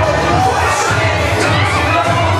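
A large crowd shouting and cheering over loud music with a steady low bass.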